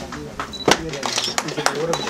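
People talking indistinctly among themselves, with a few scattered sharp clicks.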